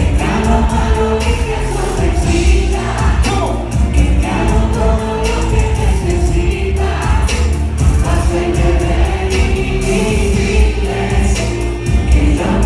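Loud live concert music through a club PA, with heavy bass, a steady beat and sung vocals, and the crowd singing along.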